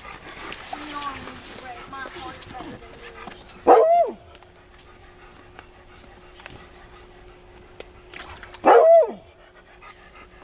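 A dog barking twice, about five seconds apart, each a single short bark.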